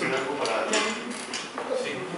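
A person's voice, talking or vocalizing, with several short sharp clicks among the sounds in the first half.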